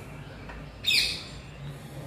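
A single short bird chirp about a second in, heard over quiet room tone.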